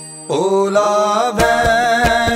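Opening bars of a Sikh shabad kirtan track: a sustained harmonium chord, a gliding melodic line coming in about half a second in, and hand-drum strokes starting about one and a half seconds in.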